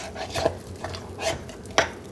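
A utensil stirring down bubbly sourdough starter in a glass jar, scraping and knocking against the glass in an uneven rhythm, with a sharper click against the glass near the end.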